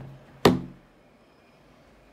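A single sharp click as the power button of a Zebra TC56 handheld computer is pressed to start a system update from its recovery menu.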